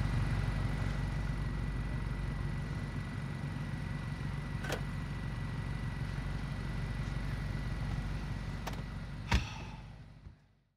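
Car engine idling steadily, with two faint clicks and a single louder thump near the end.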